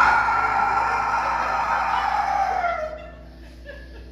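A man's long, strained, scream-like final sung note, held for about three seconds, sliding down in pitch as it trails off and stopping.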